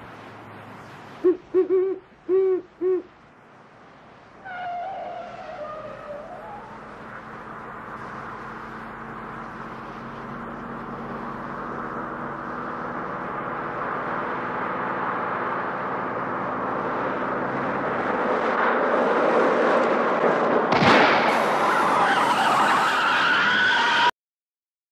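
A great horned owl hoots four times in quick succession, followed by a short falling, wavering call. Then a car approaches, its engine and tyre noise growing steadily louder. Near the end a sharp bang, the sound of a tyre blowing out, is followed by tyres squealing as the car skids.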